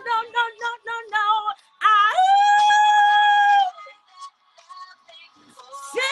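A woman singing: a run of short notes, then one long high note held for about a second and a half, after which the singing drops away.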